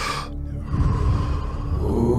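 A deep, audible breath through the mouth, one of the paced power breaths of the Wim Hof breathing method, over steady background music. The breath grows louder about 0.7 s in.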